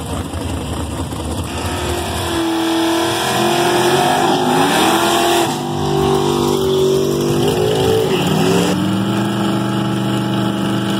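1979 Chevrolet Malibu drag car doing a burnout: engine revving hard with its pitch climbing and falling several times as the rear tyres spin. It then drops to a steady, lower running note as the car rolls forward. The engine sound comes in about two and a half seconds in.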